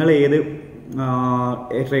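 A man speaking, with a long held, drawn-out syllable about a second in.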